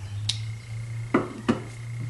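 Wooden trivets knocking together as they are handled: a light click, then two sharp wooden knocks about a third of a second apart a little past a second in, over a low steady hum.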